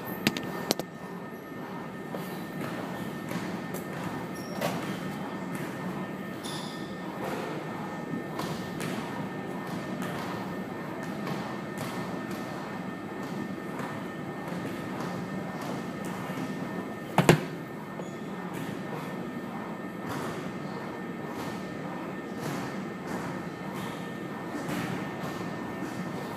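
Gym room noise with a steady hum, two sharp knocks from the phone being handled in the first second, and one loud sharp knock about seventeen seconds in.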